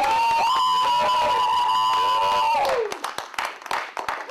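A long, high held shout of cheering, with other voices under it, lasting about two and a half seconds. Scattered clapping from a small audience follows and fades out.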